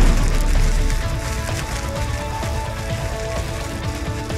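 Sound-designed logo reveal: a deep low boom dies away over the first second, followed by fire-like crackling over held music notes.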